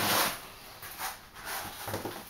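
Yellow foam pipe insulation being pulled and rubbed off pipes: a brief rustling scrape at the start, then a few faint rubbing and handling noises.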